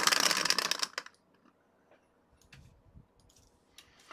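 Two dice rattling in a clear plastic dice dome as it is shaken: a dense clatter for about the first second, then a few faint clicks as the dice settle.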